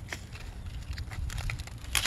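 Stiff pineapple leaves rustling and crackling as a slip is twisted and snapped off the plant by hand, with a sharp snap near the end.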